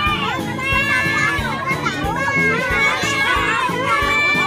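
A busload of children chattering and calling out all at once, many excited voices overlapping, with music playing underneath.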